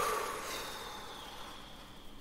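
A sudden sound, then a single high ringing tone that slowly fades.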